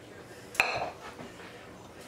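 A single sharp metallic clink of cookware about half a second in, ringing briefly, as a saucepan and spatula are handled over a roasting pan of caramel-coated popcorn; otherwise only faint handling sounds.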